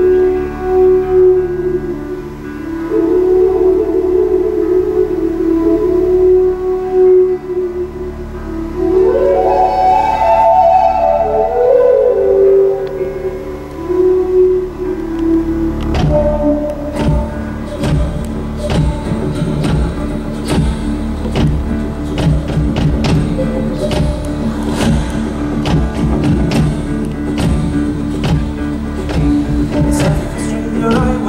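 Live Irish folk band playing an instrumental intro: a slow, sliding flute melody over a held low bass. About halfway through, strummed acoustic guitar, upright bass and a kick drum come in on a steady beat of about two a second.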